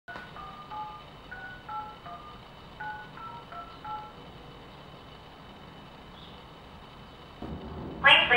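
Telephone touch-tone keypad dialing a phone number: about ten short two-note beeps in quick groups over the first four seconds. A faint steady background follows, with a low hum coming in near the end.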